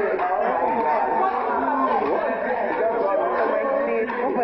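Several people talking over one another: indistinct group chatter.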